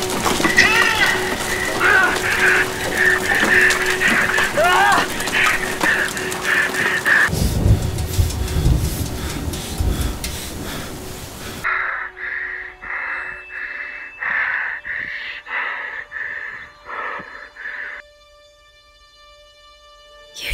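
Film soundtrack: a dense rushing noise with gasping voice sounds and music, with a deep rumble joining about halfway. It cuts off suddenly to a quieter run of short breaths about one a second, which stop near the end.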